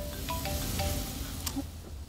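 A mobile phone ringtone playing a quick marimba-like melody of short plinked notes. It stops a little past a second in, followed by a single click.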